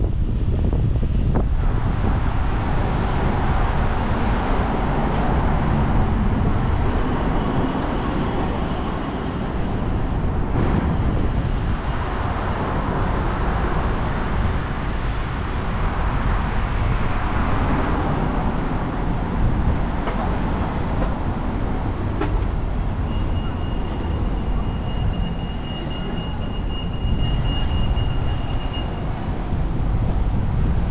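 City street ambience: road traffic running past in a continuous rumble and hiss that swells and eases. A thin high steady tone sounds for several seconds near the end.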